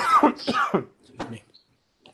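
A person clearing their throat, followed by a single click about a second later.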